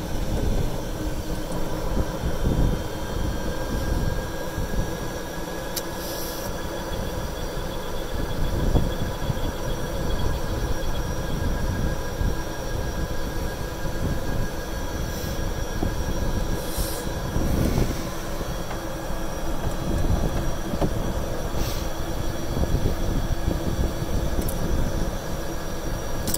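Golf cart driving along a paved road: a steady whine of several held tones from its drivetrain over a low, fluctuating rumble of tyres and air.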